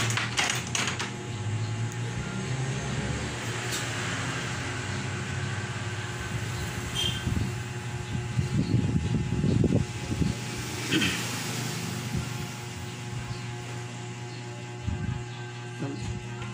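A steady low hum under light clicks and rustles of wires and tools being handled on a workbench, with a cluster of clicks in the first second.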